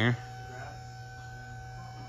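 A steady low hum with a few faint steady higher tones under it, the end of a spoken word at the very start.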